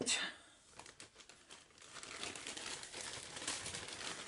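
Plastic packaging crinkling and rustling as it is handled, a dense run of small crackles that builds from about a second and a half in and fades right after the end.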